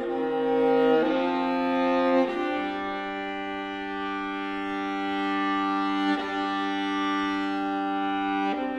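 Solo viola played with the bow: slow, long-held notes that change about a second in, again a second later, and once more near the end.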